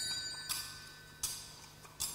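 Altar (sanctus) bells rung at the elevation of the consecrated host: a high, many-toned ringing carried over from just before, then two fresh rings about three-quarters of a second apart, and a third just at the end, each dying away.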